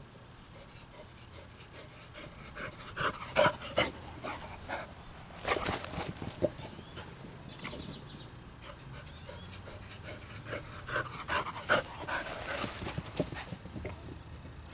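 A young black Labrador retriever panting and sniffing at the ground, in clusters of short noisy bursts about three seconds in, around six seconds and again near the end.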